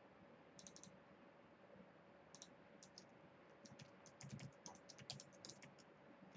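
Faint typing on a computer keyboard: a quick run of keystrokes over about three seconds, after a brief cluster of clicks just under a second in.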